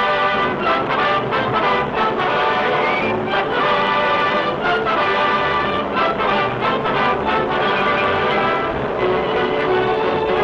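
Orchestral cartoon score playing continuously, with a rising run of notes about three seconds in.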